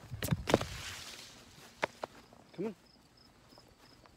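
Footsteps on grass as a person walks with a dog at heel: two sharp knocks right at the start, a short rustle, then a lone click; a man says "come on" near the end.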